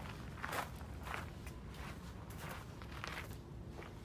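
Footsteps of a person walking at an even pace, about six steps, each a short scuffing tread.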